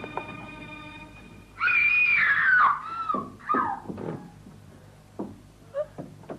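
A woman screams in terror, one long cry falling in pitch about one and a half seconds in, followed by a few short sobbing cries and faint gasps.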